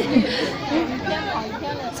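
Many voices chattering together among shoppers in a crowded shop, with a short laugh near the end.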